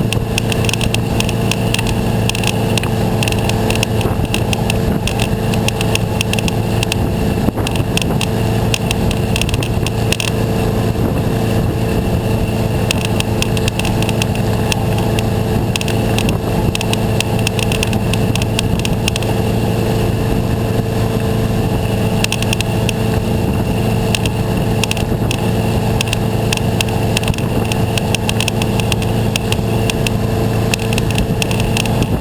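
MasterCraft ski boat's inboard engine running steadily at towing speed, with water and wind noise from the boat moving fast through the wake.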